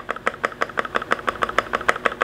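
Mechanical keyboard space bar tapped rapidly over and over, a quick run of evenly spaced clicks. The space bar has just been reworked to cure its rattle.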